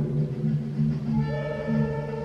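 Music playing for a dressage freestyle: long held notes over a steady low drone, with new higher notes coming in about a second in.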